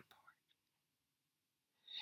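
Near silence: room tone in a pause between spoken phrases, with the faint tail of a word just at the start and a soft breath near the end.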